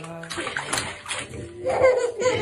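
A baby splashing bath water with its hands, a run of uneven small splashes. A voice comes in near the end.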